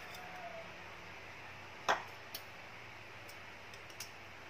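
A plastic spoon clicks once, sharply, against a ceramic plate a little before halfway, with a fainter tick about half a second later, over a low steady hiss.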